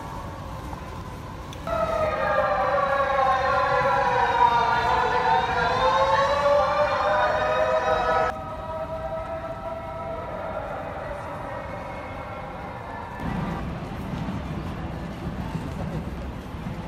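An emergency vehicle's siren wailing, its pitch sliding slowly down and back up, then cutting off abruptly about eight seconds in. A fainter siren tone holds after it until about thirteen seconds in, over steady city street noise.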